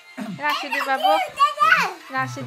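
Children's voices talking, high-pitched speech in short broken phrases.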